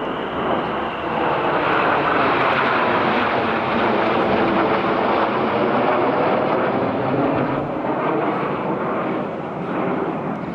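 A formation of Red Arrows BAE Hawk T1 jets flying past overhead with a loud, steady jet-engine noise. It swells over the first couple of seconds, holds, and eases a little near the end.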